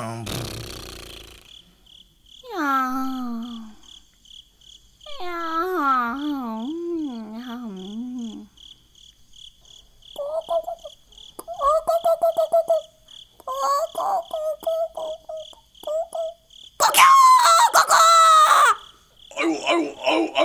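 A cricket-chirping sound effect pulses steadily as a night-time background, under a performer's voice making long, drowsy, wavering sleeping sounds. From about ten seconds in the voice turns to short choppy bursts, then a loud shrill call near the end: the puppet rooster making a racket.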